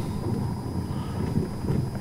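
Car driving slowly over a road of parallel concrete slabs: a steady low rumble of tyres and engine.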